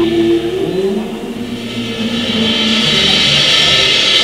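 The final held notes of a live band song: a sustained sung note through about the first second, then a held chord ringing on, with audience applause swelling over the last second or two.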